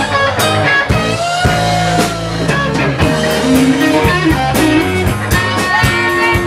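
Live rock band playing an instrumental passage: electric guitar lines with notes that bend in pitch over bass and a steady drum kit beat.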